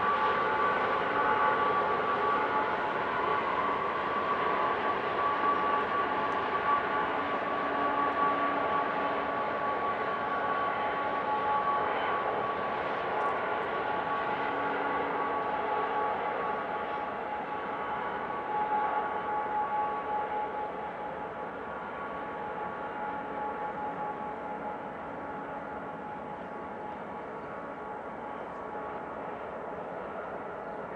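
Freight cars of a manifest train rolling past with a steady rumble of wheels on rail and a thin, steady high tone over it, fading over the last third as the train moves away.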